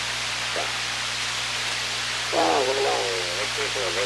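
Homemade 12AU7 regenerative shortwave receiver tuned to the 40 m amateur band: steady static hiss with a low hum, and a radio amateur's voice coming through the noise from a little past halfway.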